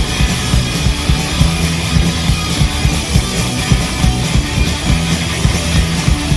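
Live punk rock band playing loud, with distorted electric guitar, bass guitar and a driving drum beat.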